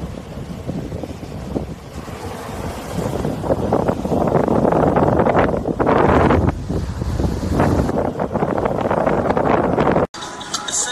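Ocean surf breaking on a sandy beach, with wind buffeting the microphone; the rush of noise swells louder in surges through the middle and again near the end.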